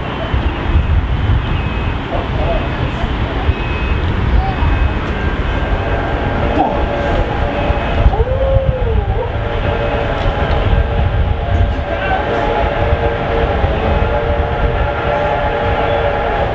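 Two Victorian Railways R class steam locomotives approaching, with a steady low rumble. From about six seconds in a multi-note steam whistle sounds and holds for roughly ten seconds.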